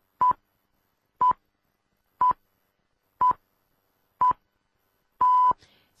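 Radio hourly time signal: five short beeps one second apart, then a longer sixth beep at the same pitch, the last one marking the exact top of the hour.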